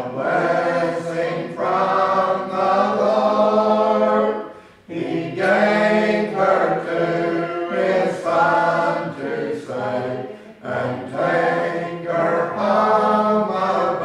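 Congregation singing a hymn a cappella: unaccompanied voices in slow, held phrases, with short breaks between lines about every five seconds.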